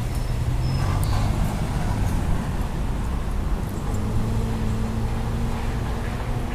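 A motor vehicle's engine running with a steady low hum, a higher hum joining about four seconds in, over street traffic noise.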